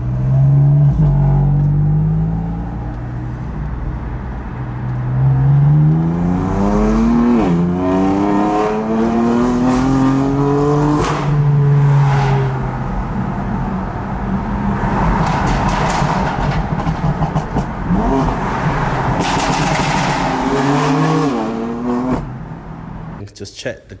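BMW's engine accelerating hard through the gears, heard from inside the cabin: the revs climb steeply, fall back sharply at each upshift and climb again, several times over.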